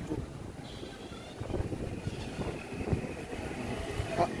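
Low, uneven rumble of street traffic, with a faint steady high tone running through it.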